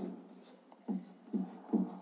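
Marker pen writing digits on a whiteboard: short separate strokes, three of them in quick succession in the second half, about two a second.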